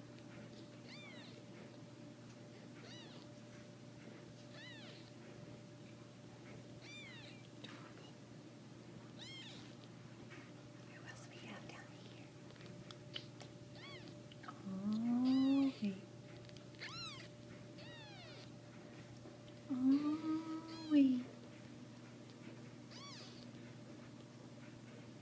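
Newborn Persian kittens mewing: thin, high squeaks every second or two. About 15 and 20 seconds in come two louder, lower drawn-out calls.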